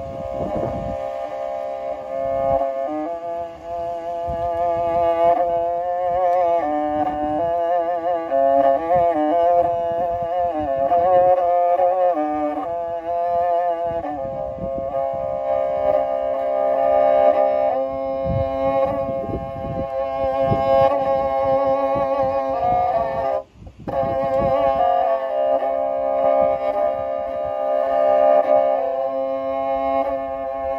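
Kyl-kobyz, the Kazakh two-stringed horsehair fiddle, bowed solo: a melody of sliding, wavering notes over a sustained drone. The notes are held longer in the second half, with a brief break about two-thirds of the way through.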